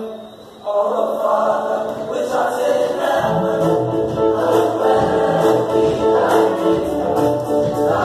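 Male choir singing in parts. The sound drops briefly at the start, then the voices come back in, and a low bass line joins about three seconds in.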